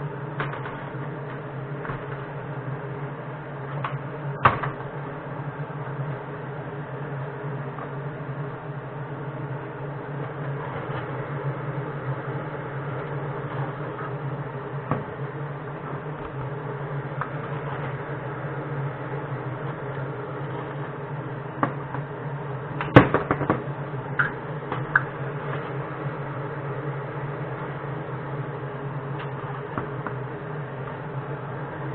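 Steady machine hum throughout, with a few sharp metallic clinks and knocks as aluminium casting molds are handled on the bench: one about four seconds in and a louder cluster a little past the middle.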